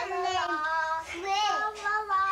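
A young child singing in a high voice, several held notes with a slide down in pitch about halfway through.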